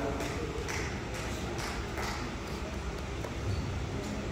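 Faint, evenly paced footsteps on a squash court floor, about two a second, over the quiet background hum of a large hall.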